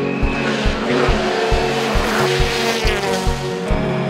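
Hyundai i20 WRC rally car's turbocharged four-cylinder engine revving hard, its pitch rising and falling, with background music keeping a steady beat underneath.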